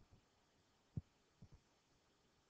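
Near silence with a faint hiss, broken by a short, soft low thump about a second in and two weaker ones close together about half a second later.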